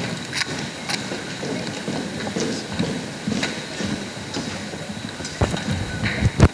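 Steady room noise from a seated audience in a large gym hall, with scattered small clicks and rustles. Near the end come a few loud thumps from the podium microphone being handled.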